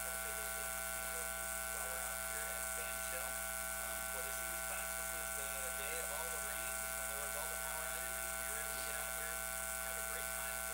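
Steady electrical buzz and hum, made of many held tones, with a man's speech faint and indistinct beneath it.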